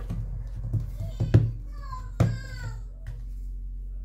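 Smartphones in protective cases being handled and set down on a table, with two sharp knocks in the middle, over a steady low hum. A child's voice sounds in the background.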